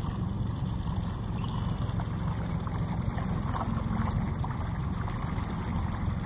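Steady low rumble with faint trickling water.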